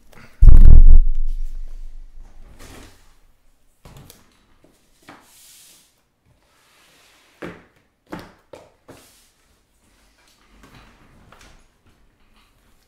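Cardboard trading-card boxes being handled and shifted on the table: one loud, low thump about half a second in, then several light knocks and faint scrapes.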